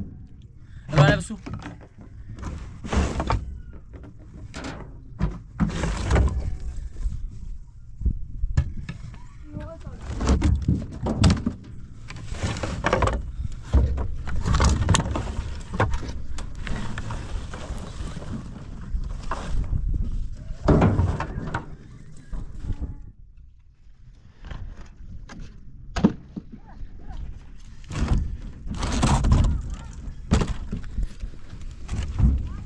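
Chunks of dry firewood being lifted out of a pickup truck bed and tossed down, giving irregular wooden knocks and clatter as logs hit each other and the ground.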